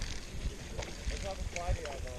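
Wind rumbling on the microphone, with faint voices talking in the distance about a second in.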